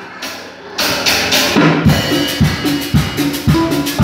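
Live Latin dance band starting a song. Drums and percussion come in about a second in, and about half a second later bass notes join them in a steady dance beat.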